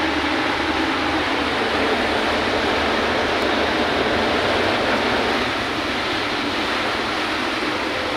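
Steady rushing noise inside a Maruti Eeco van driving at speed through heavy rain: rain and spray from the wet road, with a low engine and road drone underneath.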